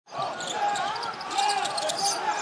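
A basketball dribbled on a hardwood court during live play, with arena voices behind it.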